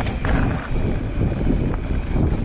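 Wind buffeting the microphone while a hardtail mountain bike rolls along a dirt trail, a steady loud rush with low rumble from the tyres on the dirt.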